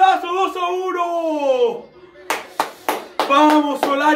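A young man's voice yelling in celebration of a goal, held and then sliding down in pitch, followed by a few quick hand claps and more yelling.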